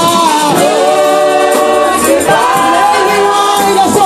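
Gospel praise-and-worship singing: a worship team of several voices in harmony, led by a woman, holding long notes that slide between pitches.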